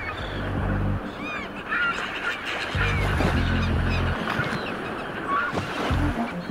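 Closing music with low held bass notes, one early and one in the middle, under a dense layer of short bird calls that honk like a flock of geese.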